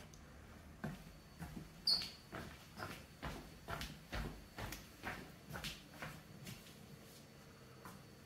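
Faint footsteps indoors, about two a second, with a brief high squeak about two seconds in; they stop shortly before the end.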